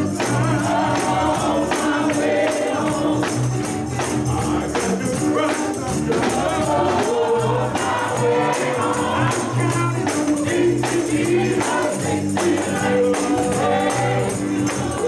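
Live gospel music: a lead singer and a group of backing singers over electric guitar, drums and a repeating low bass line, played through the church's loudspeakers.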